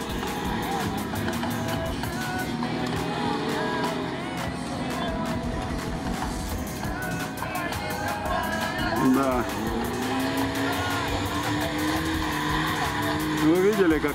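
Lada Niva off-road cars' engines revving up and down as they churn through deep mud, with a long climb in revs in the second half. Music plays alongside.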